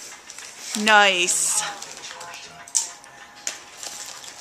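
Kettle-cooked salt and vinegar potato chips being chewed, a few faint crunches spread through the last couple of seconds.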